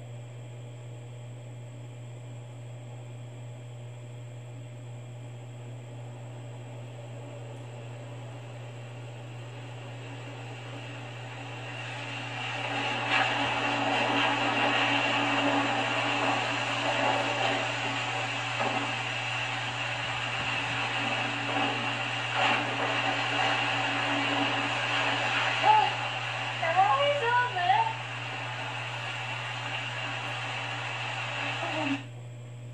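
Film soundtrack playing through the Ace LED TV's built-in speakers, heard in the room over a steady low hum. It is quiet for about the first twelve seconds, then louder effects and ambience come in, with a few short voices near the end.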